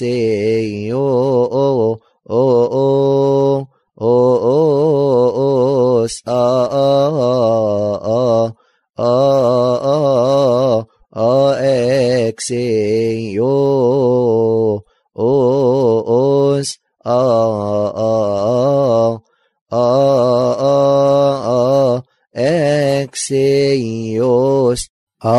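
A voice chanting a Coptic madih (praise hymn) in long, wavering melodic phrases broken by short pauses.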